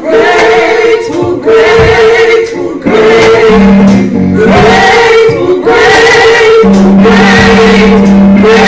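Gospel singing by a few singers on microphones, loud, with long held notes.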